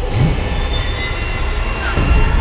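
Horror-trailer sound design: a steady low rumbling drone with thin, faint high-pitched tones held over it.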